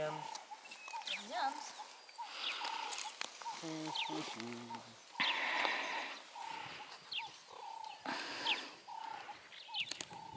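Meerkat pups calling: a steady string of short chirping calls with frequent quick rising squeaks, broken by a few bursts of scratchy noise.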